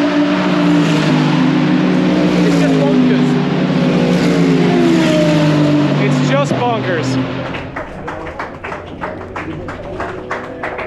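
GT3 race car engines running at speed on the circuit, their pitch sliding down and shifting as cars go by. A few seconds before the end they fade, and music with a quick percussive beat takes over.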